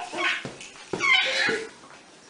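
Infant's short, high-pitched squeal about a second in, after a brief vocal sound at the start.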